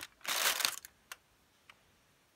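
A brief crinkling rustle as the cardboard chocolate advent calendar and its foil are handled, followed by two faint clicks.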